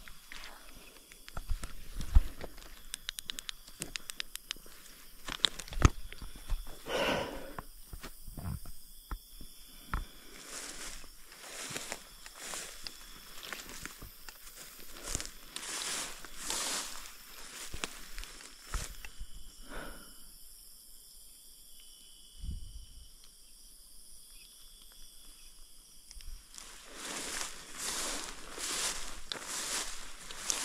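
Footsteps and the swishing rustle of tall grass and weeds as someone pushes through dense overgrowth, in irregular bursts, easing off for several seconds about two-thirds of the way through.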